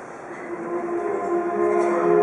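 Live choral singing with instrumental accompaniment: one phrase fades to its softest point, and the next sustained chord swells in.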